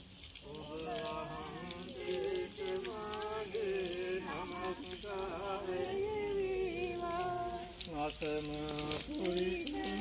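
A group of voices chanting together in a slow melody, with long held notes that shift in pitch, over a steady hiss.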